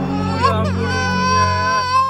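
Infant crying, with a long, drawn-out wail held through the second half.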